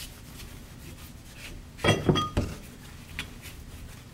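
Cloth rubbing over a steel torque limiter plate, with a few metallic clinks about halfway through as the steel parts knock together and ring briefly.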